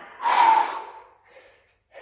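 A man breathing hard after a cardio exercise set: one loud gasping exhale, then short panting breaths about every two-thirds of a second.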